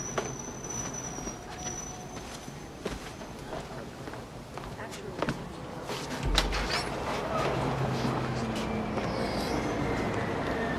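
City traffic ambience with scattered footsteps and a low thud about six seconds in.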